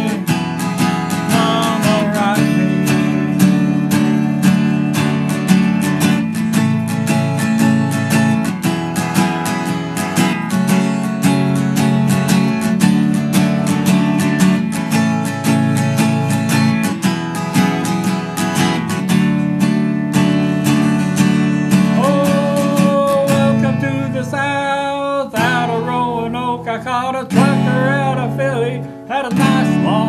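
Acoustic guitar strummed in a steady rhythm, an instrumental passage of a song; the strumming thins out in the last few seconds as a voice comes in.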